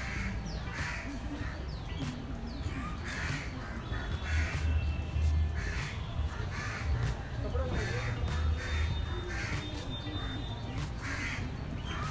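Birds calling repeatedly, roughly once a second, over a low background rumble with faint voices behind.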